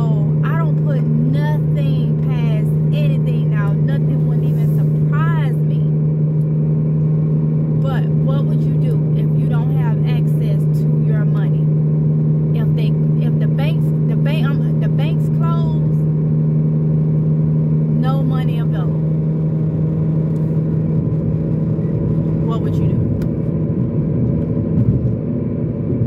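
Car engine running at idle with a steady low hum inside the cabin; the hum drops away about three seconds before the end.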